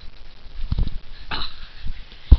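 Scottish terrier on a bed: a dull thump a little under a second in, then a short, noisy nasal huff from the dog.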